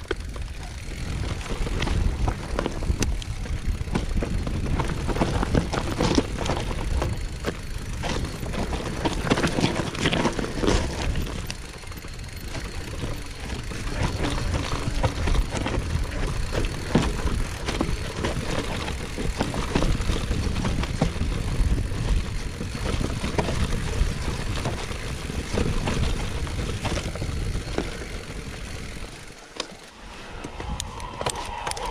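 Mountain bike riding down a rough, stony singletrack: a heavy rumble of wind on the microphone, with tyres crunching over the ground and the bike rattling and clicking over bumps.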